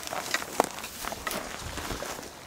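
Irregular light crunching and rustling footsteps on dry leaf litter and gravel, with a few sharp ticks.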